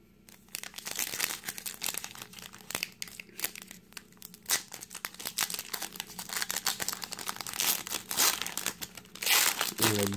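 Foil wrapper of a Topps baseball card pack being torn open and crinkled by hand: a dense run of crackles that starts about half a second in and is loudest near the end.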